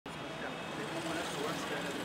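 Street ambience: indistinct voices over a steady hum of traffic.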